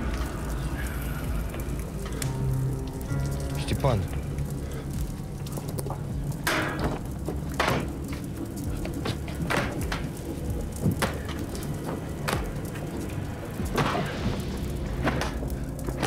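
Fire crackling in a wooden barn, with irregular sharp pops and snaps, under a tense film score of low sustained notes.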